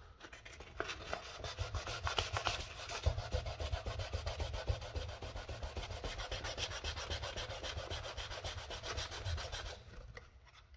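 400-grit sandpaper rubbed by hand in quick back-and-forth strokes over the plastic body shell of a 1/14-scale RC Lamborghini Huracan, sanding off crash scratches. The strokes stop just before the end.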